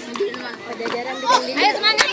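Boys chattering and calling out together, several high voices overlapping and growing louder in the second half.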